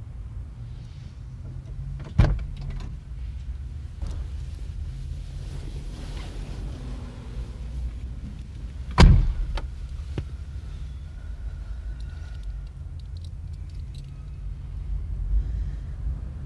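Car doors being worked: a sharp click about two seconds in, then a car door shut with a heavy thud about nine seconds in. Under it runs a low, steady rumble.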